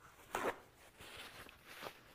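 Paper towel torn from a roll with a short rip about a third of a second in, then rustling as it is handled, with a brief sharper sound near the end.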